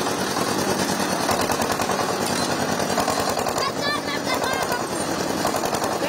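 Motorised cotton carding machine running with a fast, steady rattle as it fluffs cotton for quilt filling.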